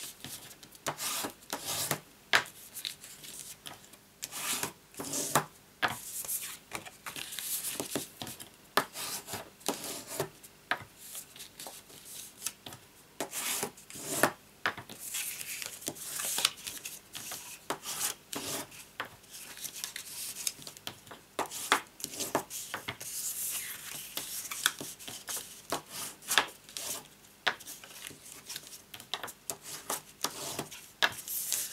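Stiff cardstock being folded by hand and its creases rubbed down, the card sliding and scraping on the work mat in a run of irregular rubbing strokes.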